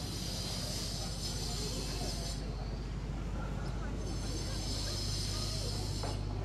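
Outdoor promenade ambience: faint, indistinct voices of passers-by over a steady low hum, with a high hiss that drops out about two seconds in and comes back about four seconds in.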